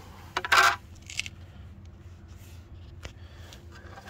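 A hard plastic side-skirt piece knocking with one short sharp clack, followed by a lighter tick about half a second later and a few faint clicks.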